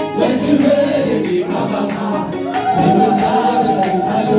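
Gospel worship song sung by several voices with musical accompaniment; a long held note comes in about two and a half seconds in.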